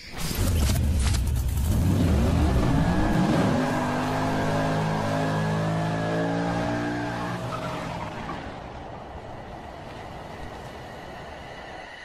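Car engine revving up and holding high revs during a burnout, with tyre squeal. It starts with a loud rumble, climbs in pitch over a couple of seconds, holds steady, then fades over the last few seconds.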